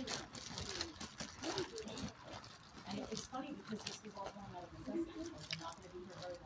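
Low, indistinct talking with no clear words, along with scattered soft clicks and rustles in the first couple of seconds.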